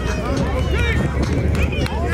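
Several people shouting and calling out at once, overlapping high voices with no clear words, over a steady low rumble.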